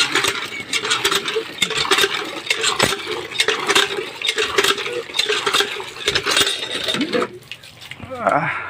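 Rusty iron hand pump being worked, its handle linkage clanking and creaking while water gushes and splashes into a metal bucket. The sound eases off near the end.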